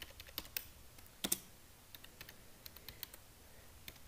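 Typing on a computer keyboard: scattered, uneven keystrokes, with a louder pair of key presses a little over a second in.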